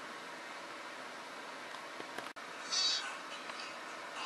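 Steady background hiss, broken by a sudden dropout a little past halfway, then a short high-pitched sound from the tablet's small speaker as the film's playback begins.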